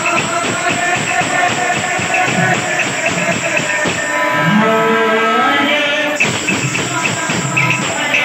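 Odia kirtan: a male lead singer sings devotional lines into a microphone over a group beating khol drums. Midway he sings a run of long held notes.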